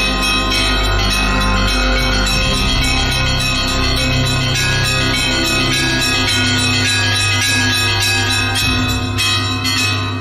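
Programme theme music built on bell ringing: rapid bell strokes over sustained low notes.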